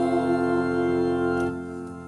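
Final held chord of a hymn, sung by two voices over organ accompaniment; the chord is released about one and a half seconds in and dies away.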